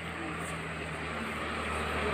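A motor vehicle's engine running, a steady low hum that slowly grows louder as it approaches.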